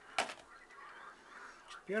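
A single short, sharp handling sound from the plastic camcorder body as it is turned over in the hands, heard about a fifth of a second in. After it there is faint room tone.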